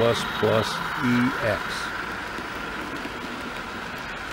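A man's voice saying 'EX' in the first second and a half, then a steady, even hiss with no distinct events.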